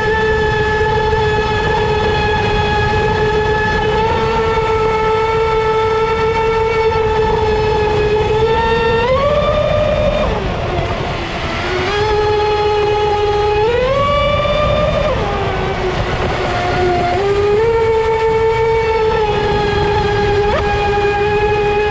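Leopard 4082 2000kv brushless motor in a Dominator RC boat running at speed, a steady whine with overtones over a constant low noise. The pitch rises and then drops twice, about nine and fourteen seconds in, then settles back to the steady tone.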